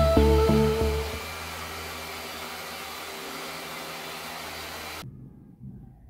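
Background music with a steady beat for about the first second, then a steady hissing whoosh with faint held tones that cuts off abruptly about a second before the end, leaving quiet room sound.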